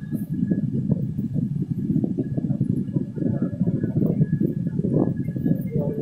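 Passenger train's coaches running along the track, heard from on board: a loud, dense rumble with rapid clattering of the wheels on the rails.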